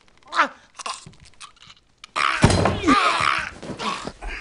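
Film sound effect of a neck being snapped: a short falling cry from the victim about half a second in, a few faint knocks, then a loud bone-crunching crack at about two seconds in, running on through the end with strained, voice-like sound.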